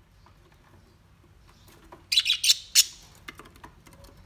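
Caged budgerigars giving a quick run of about five loud, sharp, high chirps a little past the middle, followed by a few faint clicks.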